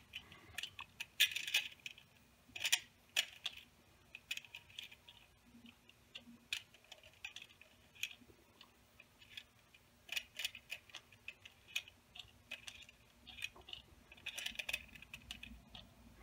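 Light, irregular clicks, some in quick little clusters, of 4.5 mm steel BBs and 3D-printed plastic parts being handled as the BBs are taken from a plastic tray and set into a printed roller cage on a shaft half.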